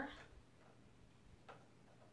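Near silence with faint ticks and a single small click about one and a half seconds in: a ratchet blade being set into the blade adjuster of a Silhouette Cameo 4 cutting machine.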